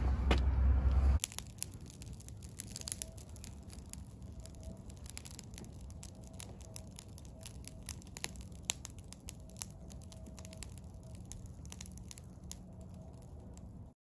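A loud low rumble cuts off about a second in. Then a small wood fire burning in metal mesh burner cans, crackling with irregular sharp pops.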